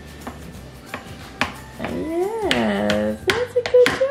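Baby tapping a plastic spoon on the plastic tray of her seat, a series of irregular taps, with a high rising-and-falling baby squeal about two seconds in.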